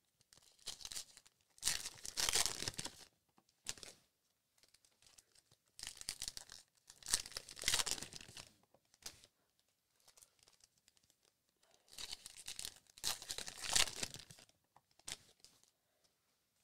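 Trading-card pack wrappers being torn open and crinkled by hand, in three main bursts about five seconds apart with smaller rustles between.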